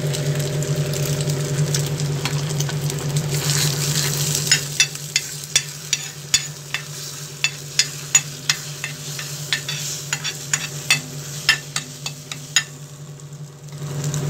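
A fried egg sizzling on a tawa griddle while a steel ladle chops and scrapes it against the griddle, giving sharp metal taps about once or twice a second from around five seconds in. A steady low hum runs underneath.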